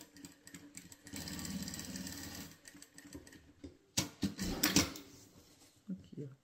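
Industrial sewing machine stitching a short seam in a quick run of about a second and a half, sewing a fabric scrap onto a patchwork strip. A few loud sharp clicks and knocks follow near the end as the fabric is handled and pulled from under the foot.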